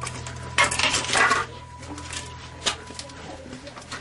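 Rustling and a few sharp clicks, loudest about a second in, over a steady low hum and a faint high tone.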